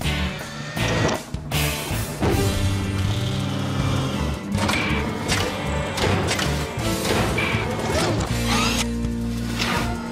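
Cartoon transformation sequence: music with a series of mechanical clanks and swooshing glide effects as a robot dinosaur snaps into a new vehicle shape.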